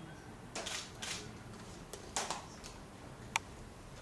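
Quiet dance footwork on a wooden floor: a few soft shoe scuffs and slides from high heels and men's shoes, then one sharp tap a little after three seconds in.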